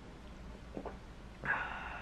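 A quiet sip of hot coffee from a ceramic mug, then a breathy exhale starting about one and a half seconds in.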